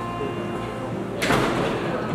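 Classroom background of indistinct voices, with one short, loud, rushing noise a little over a second in, like a door sliding or furniture being moved.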